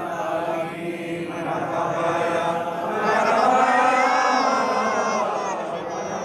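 A group of men chanting a devotional milad-qiyam salutation together. The chant gets louder about halfway through, with one voice's wavering melody standing out.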